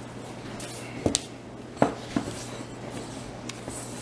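Breaded pork chops sizzling steadily in hot oil in a cast iron skillet, with a few light clicks or knocks in the first half.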